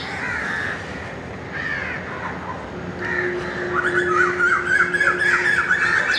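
Bird calls: short harsh caw-like notes, then a quick, wavering call over the last two seconds. A faint steady hum runs underneath from about halfway through.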